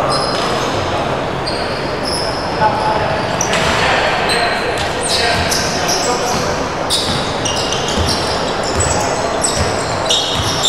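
Basketball game on a wooden court in a large, echoing hall: the ball bouncing, many short high sneaker squeaks, thickest in the second half, and voices calling out.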